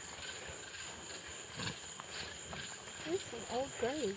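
Faint night-time ambience with a steady high-pitched insect trill from crickets. Near the end, a woman's voice gives a few short rising chuckles as she starts to laugh.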